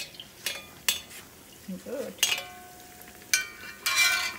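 A perforated metal skimmer scooping and splashing hot ghee over a pua frying in a cast-iron wok, clinking sharply against the pan about six times with a short ring each time. The ghee sizzles faintly underneath.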